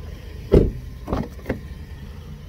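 A 2013 Kia Sorento's car door thumps shut about half a second in, followed by two lighter knocks and clicks as the rear door is handled.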